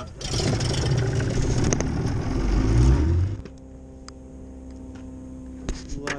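Boat motor running loud and rough with a heavy low rumble, then dropping at about three and a half seconds to a quieter, steady idling hum.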